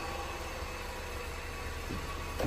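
Honda car engine idling steadily, heard as a low even hum under a faint hiss.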